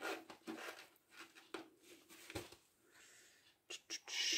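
Faint handling sounds: a few soft rustles and light taps, spread out with quiet gaps, as hands pull an elastic cord and needle through a fabric journal cover.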